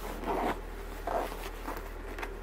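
Zipper on a padded winter jacket being worked in two short strokes, then a fainter third.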